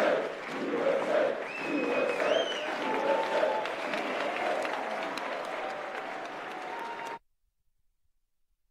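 A large audience applauding, with voices in the crowd and a shrill whistle that rises in pitch about two seconds in. The sound cuts off abruptly about a second before the end.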